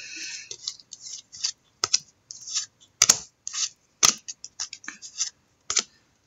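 Trading card packs and cards being handled: a quick run of short papery scratches and rustles, with a few sharp clicks.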